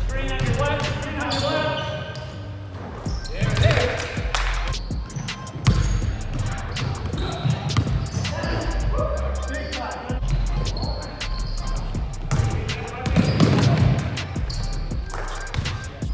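Basketball bouncing repeatedly on a hardwood gym floor as it is dribbled, sharp thuds at an uneven rhythm, with players' voices in the hall.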